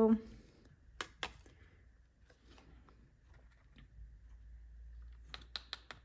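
Light clicks and taps of cardstock and scrap paper against a small plastic embossing-powder jar, with faint paper rustling, as loose silver embossing powder is tipped back into the jar. There are two sharp taps about a second in and a quick run of taps near the end.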